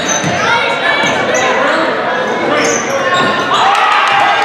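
Live gym sound of a basketball game: a basketball being dribbled on the hardwood court, with spectators' voices and a laugh in a large echoing hall.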